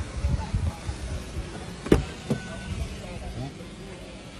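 A sharp click about two seconds in, followed by a lighter click: the driver's door latch of a VinFast VF8 being released as the door is opened, with some low handling noise before it.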